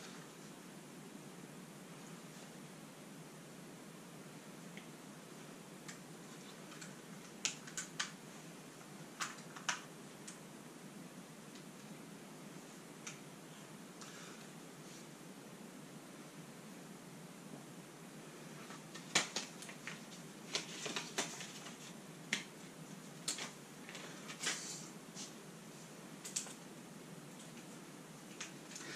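Scattered light clicks and taps of hard plastic drone batteries and gear being handled and set into a foam-lined plastic hard case: a few about a third of the way in, then a busier run of them in the last third, over faint room hiss.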